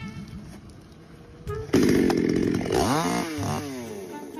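Petrol chainsaw suddenly running loud at high revs about two seconds in, then its pitch sliding down several times as the throttle is let off.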